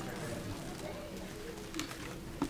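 Low murmur of people talking quietly in a large meeting room, with shuffling and a few light clicks, one near the end.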